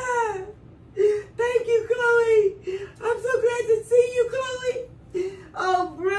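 A woman crying and wailing, a string of high, wavering "ah" cries broken by short gaps.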